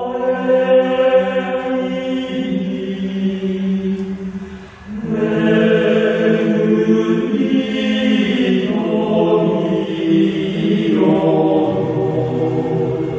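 Male vocal ensemble of eight voices singing sustained chords in harmony. The sound thins out briefly just before the middle, a breath between phrases, then the full chord comes back louder.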